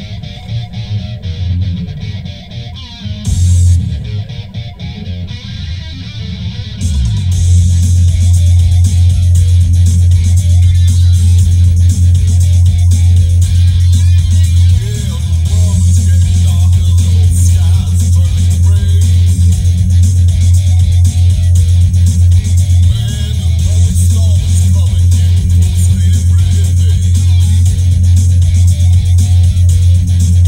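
Bluesy hard-rock song played loud through a car stereo: electric guitar over heavy bass. It opens quieter, and the full band comes in loud about seven seconds in.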